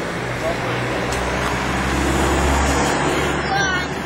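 A motor vehicle passing by, its low engine hum swelling to a peak about two and a half seconds in and then fading, over the chatter of the market crowd.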